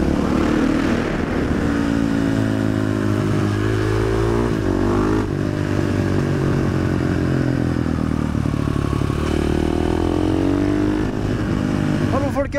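KTM 500 EXC single-cylinder four-stroke running loud through an FMF exhaust with the dB killer removed, its engine speed climbing and dropping back several times as the rider accelerates and eases off.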